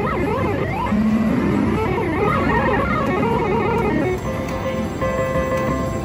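Haywire Deluxe slot machine playing its electronic feature tune of wobbling, sliding tones. About four to five seconds in it changes to steady held chiming tones as a win is paid onto the credit meter.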